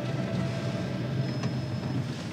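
Steady low rumble of a car running, heard from inside the car's cabin.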